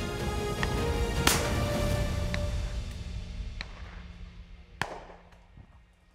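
Background music with sustained tones fading out over the second half. Several shotgun shots sound over it: a loud one about a second in, another near five seconds, and fainter ones in between.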